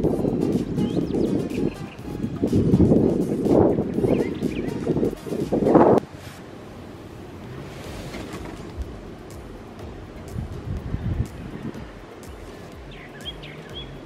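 Wind buffeting the microphone in loud low gusts for about the first six seconds, stopping abruptly. Then a quieter outdoor ambience with a few short bird chirps near the end, under background music.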